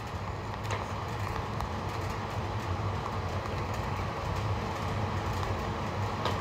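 Steady low rumbling background noise with a faint click or two.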